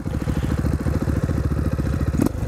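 Single-cylinder four-stroke dirt bike engine running steadily while riding, its firing pulses coming in a fast even rhythm.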